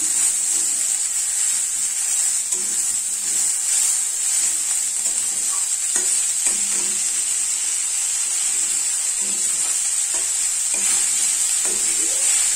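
Chopped bitter greens and vegetable pieces sizzling in a kadai with a steady hiss, stirred by a metal spatula that scrapes the pan now and then.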